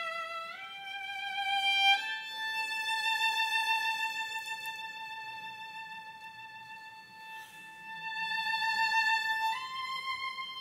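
Solo violin bowed slowly: a couple of rising notes, then one long high note held for about seven seconds with vibrato, stepping up to a higher note near the end.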